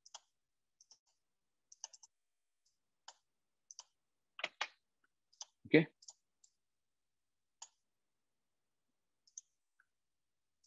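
Computer mouse clicking now and then, a dozen or so short, light clicks, with a single louder thump a little past halfway.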